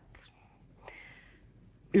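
A short pause in a woman's speech, filled by a soft breath about a second in; her talking resumes at the very end.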